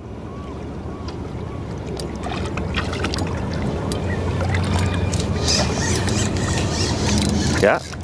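A boat motor running steadily with a low hum, growing gradually louder over several seconds.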